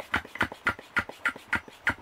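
Handheld pump sprayer being pumped up by its plunger handle, a quick, even train of air puffs about four a second as the tank is charged with pressure.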